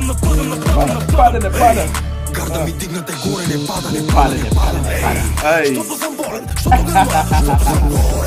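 Bulgarian drill track: rapid rapping in Bulgarian over a beat with heavy deep bass, which drops out briefly twice.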